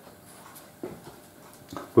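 Pencil drawing on a sheet of MDF: faint scratching strokes, with one short soft knock just under a second in.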